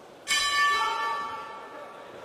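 Boxing ring bell struck once about a quarter second in, ringing and then fading away. It marks the end of the last round of the bout.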